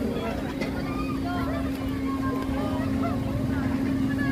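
A steady, low mechanical hum with one unchanging pitch, under the chatter of a crowd of people talking.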